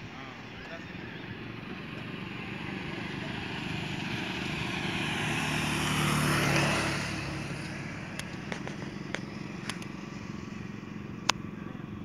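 A road vehicle passing on the bridge: its engine and tyre noise grow over several seconds, are loudest about six and a half seconds in, then fade away. A few sharp clicks follow near the end.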